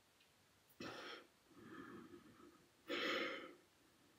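A woman's faint, breathy exhalations, two short ones about two seconds apart, in time with the repetitions of a lying core exercise.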